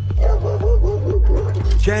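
A police dog barking rapidly and repeatedly, over a soundtrack with a steady, heavy bass beat; a narrator's voice comes in near the end.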